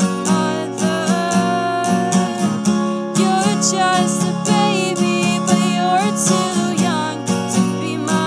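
Steel-string acoustic guitar strummed in a steady rhythm during a live song, with a held melodic line bending over the strumming.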